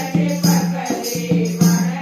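Women singing a devotional folk song together in unison, over a dholak's steady beat of about three strokes a second, with hand clapping and metal jingles keeping time.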